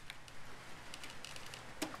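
Faint handling sounds of a small screwdriver driving the little screws that hold a plastic propeller spinner cover: low hiss with a few light ticks and one sharper click near the end.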